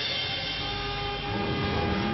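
Animated-series soundtrack: sustained background music notes over a low rumble.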